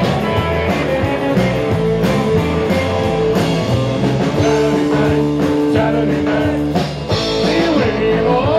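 Live blues-rock band with electric guitars playing loud and steady, with two notes held together for about two seconds near the middle.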